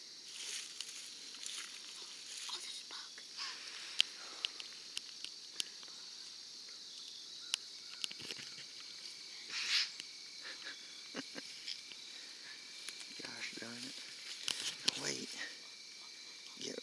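Steady high-pitched chorus of insects in a grassy field, with scattered clicks and short rustles as people shift position in the grass. Low whispering near the end.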